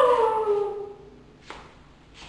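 A man's long howl-like wail that slides down in pitch and fades out about a second in. A single sharp click follows shortly after.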